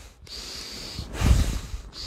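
A man's deep breathing paced with a shoulder-rotation warm-up: a steady hissing breath, then a louder, rougher breath from about a second in.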